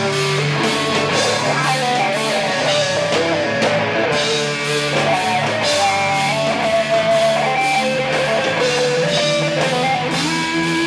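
Live rock band playing: electric guitars and a drum kit with a steady beat of drum and cymbal strokes, guitar notes shifting over the top.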